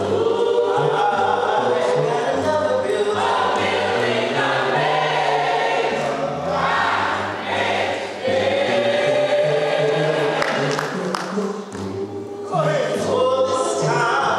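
A gospel choir of men's and women's voices singing together over a low, stepping bass line. The sound dips briefly about twelve seconds in, then the choir comes back in full.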